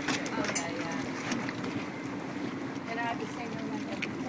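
Boat engine running with a steady low hum as the boat moves slowly through the harbor, with wind on the microphone.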